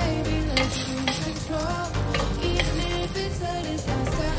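Chicken pieces and tomato sizzling as they fry in a stainless steel pot, stirred with a wooden spoon, with background pop music playing underneath.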